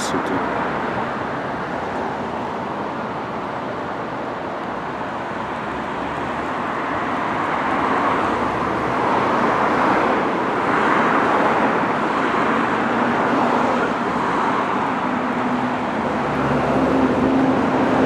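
Steady city street traffic noise that swells for a few seconds around the middle as vehicles pass.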